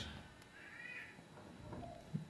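A faint, single animal call, rising then falling in pitch, about half a second long, a little over half a second in.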